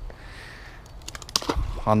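A quiet stretch, then a few quick clicks and a dull low thump about a second and a half in, followed by a man starting to speak at the very end.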